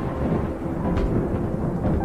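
Cinematic background music dominated by a deep, rumbling low end, with a few faint held notes above it.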